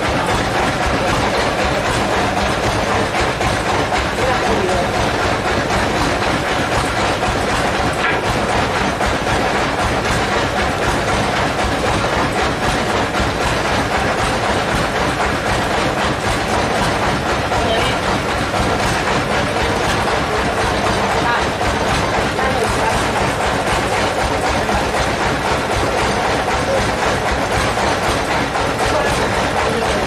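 Sawmill machinery running steadily with a continuous rattling clatter.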